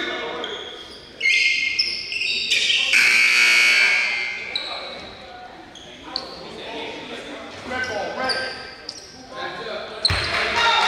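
Gymnasium scoreboard horn blaring for about three seconds, starting sharply a second in, over voices in the hall; it signals the end of the break before the second quarter.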